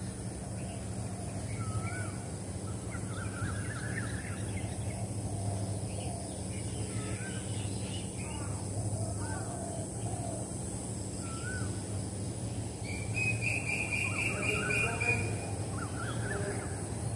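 Several birds chirping and calling in short notes throughout, with a rapid trill about thirteen seconds in, over a steady low hum.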